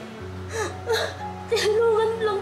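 A woman wailing and sobbing, her voice wavering, over a steady background music score. The crying grows louder about halfway through.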